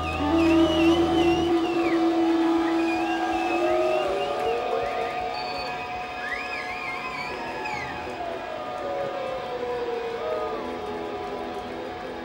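Psychedelic noise-rock band playing live: a slow, droning passage of sliding, wavering electronic and guitar tones. A deep low drone cuts off about a second and a half in.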